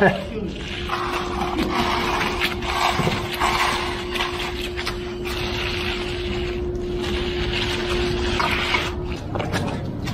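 Concrete hand float scraping over wet concrete in a series of rasping strokes. A steady hum runs under it until about a second before the end, over a low rumble.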